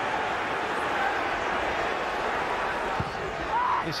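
Football stadium crowd: a steady wash of many voices at a constant level.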